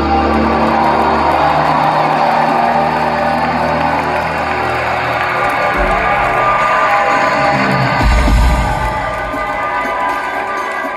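Live indie rock band holding out sustained guitar and keyboard chords with a few deep bass swells, while the crowd cheers and whoops over the music.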